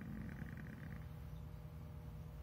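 A man's low, creaky closed-mouth "mmm" hum of hesitation, fading out about a second in. After it there is only a faint steady room hum.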